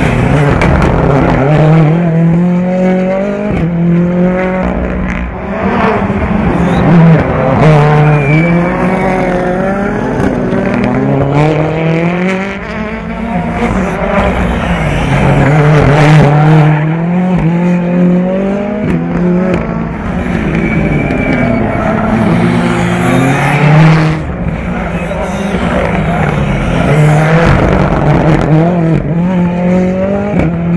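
Ford Fiesta R5 rally car's turbocharged 1.6-litre four-cylinder engine driven hard, its pitch repeatedly climbing under acceleration and dropping through gear changes and braking for corners.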